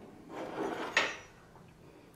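Plastic rubbing and scraping, then one sharp plastic click about a second in, as a headlight retaining push clip is worked loose and pulled out.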